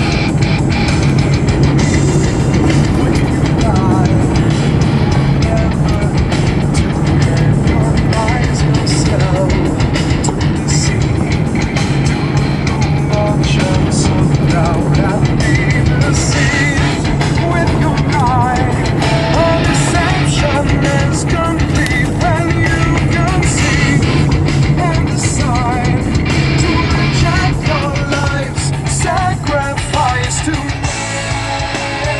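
Rock music with guitar playing continuously and loudly, over the steady low rumble of a car driving.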